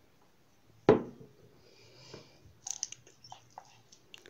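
A single sharp knock about a second in, then a few light clicks and scrapes of a slotted spatula in a frying pan as stirring of diced chicken and onion begins.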